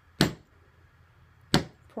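A mallet striking a leather-stamping tool twice, just over a second apart: sharp knocks on tooling leather laid on a granite slab.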